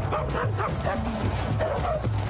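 Repeated short yelping and whimpering cries that rise and fall in pitch, over a low, steady background-music drone.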